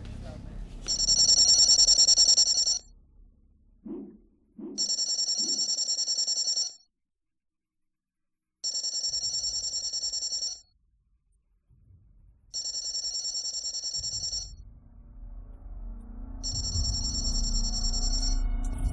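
Electronic desk telephone ringing with an incoming call: five trilling rings of about two seconds each, about four seconds apart, the first the loudest.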